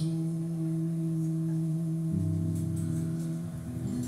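Live acoustic music between sung lines: two acoustic guitars ringing under a long, steady held note, with a chord change about two seconds in.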